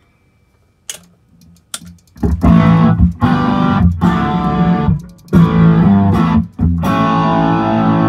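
Electric guitar played loudly through a Quilter Tone Block 202 solid-state amp head into a live speaker cabinet, with distorted chords starting about two seconds in and running in phrases broken by two short gaps. Two faint clicks come before the playing.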